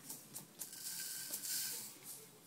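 Candy sprinkles rattling in a small plastic cup: a few light clicks, then a steadier, faint rattle from about half a second in.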